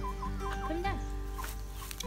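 Silkie chickens clucking, a quick run of short clucks in the first half-second and a few more after, over steady background music.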